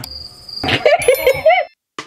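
A high steady tone lasting about half a second, then a person laughing, cut off near the end.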